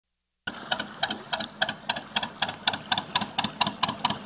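Steady, even ticking, about four ticks a second, starting half a second in after silence, over a faint low rumble.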